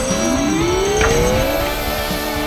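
Cartoon sound effect of repeated rising tones, each climbing over about a second and a half, layered over background music, with a brief sharp sound about a second in.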